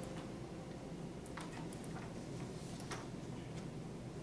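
A few irregular light clicks of laptop keys and mouse buttons over a steady room hum.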